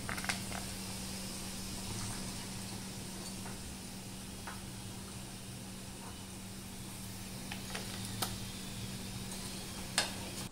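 Hot oil in a frying pan sizzling faintly and steadily after deep-frying, with a few scattered small crackles and a low steady hum.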